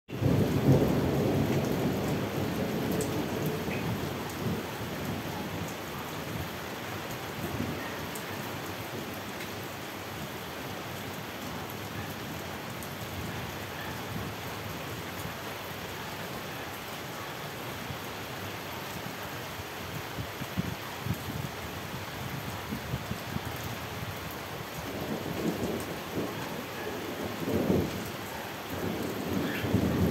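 Rain falling steadily through a thunderstorm, with thunder rumbling loudly at the start and fading, then rolling in again near the end.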